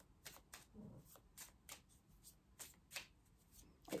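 A tarot deck being shuffled by hand: a quiet, irregular run of soft card flicks, about three a second.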